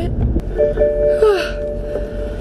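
A woman sighs over a held musical tone that starts about half a second in and lasts for more than a second, with the low rumble of the car cabin underneath.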